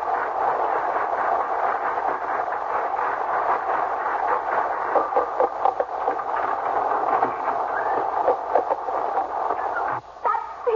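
Radio-drama storm sound effect: a steady rush of rain and wind, with a few sharp knocks in the second half.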